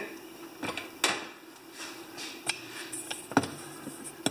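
Clicks and knocks from a caged work lamp being unplugged and its plug pulled from the outlet: a few sharp clicks, the clearest about a second in and another near the end, over a faint steady hum.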